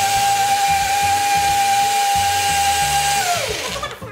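Countertop blender motor running at a steady high pitch while blending a milkshake. It is switched off a little after three seconds in, and its whine falls away as the blades spin down.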